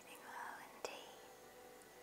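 A soft whispering voice with a sharp mouth click a little under a second in, over a faint steady hum.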